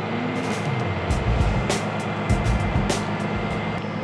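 Edited-in sound effects with music under an animated subscribe overlay: a few sharp pops near the middle, over a steady low hum and two short deep rumbles, about a second and two and a half seconds in.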